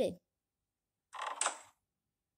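Minecraft's chest-closing sound effect played as a ringtone preview from a phone's speaker: a single short wooden creak, about half a second long, starting about a second in.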